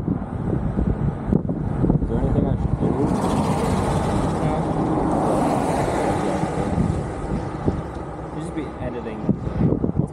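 A road vehicle passing by, its noise swelling and fading between about three and seven seconds in, over a steady low wind rumble on the microphone.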